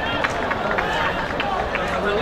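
Several people talking near the microphone, with a few short sharp knocks scattered through.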